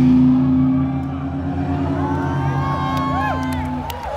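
Live rock band's sustained low chord ringing on after the drums stop, with the festival crowd whooping and cheering over it in the second half. The chord cuts off near the end.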